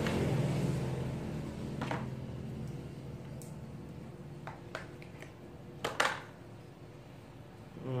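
A low, steady engine-like hum fades away over the first four or five seconds, while a few sharp plastic clicks come from a small cordless-drill battery pack being handled, the loudest about six seconds in.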